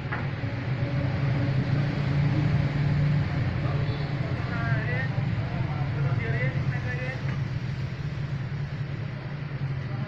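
Voices of people talking in the background, faint and wavering about halfway through, over a steady low rumble.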